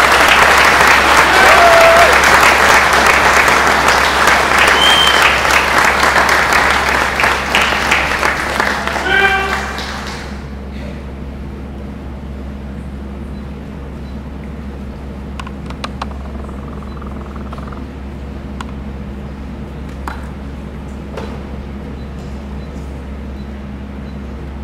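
Audience applauding for about ten seconds, with a few voices calling out, then the clapping dies away. The rest is a quieter hall with a steady low hum and a few scattered clicks.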